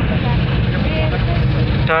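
Steady low engine and road rumble heard from inside a moving vehicle, with faint voices in the background and a person starting to speak near the end.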